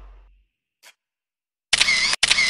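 A low sound fades out at the start, then after a quiet stretch a loud camera shutter sound effect starts suddenly near the end, a mechanical click-and-whir.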